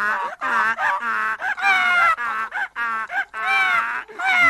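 Cartoon animal calls: a quick run of short, honking cries, about two a second, each sliding in pitch.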